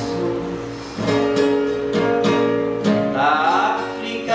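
Acoustic guitar strummed in a steady rhythm, with a voice singing along.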